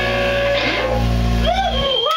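Distorted electric guitar and bass let a chord ring out with high feedback tones, closing a song. The low end cuts off shortly before the end.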